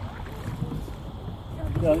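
Low, steady noise of wind on the microphone and water around a small rowboat, with a man starting to speak near the end.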